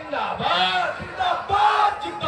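A man and a crowd shouting a political slogan. There are two loud shouts, one about half a second in and one near the end.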